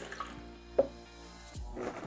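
Vinegar poured from a glass measuring cup into a blender jar, under soft background music, with one short knock a little under a second in.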